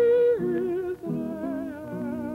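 Music: several voices singing together in held, vibrato notes, moving to a new chord about half a second in and again about a second in.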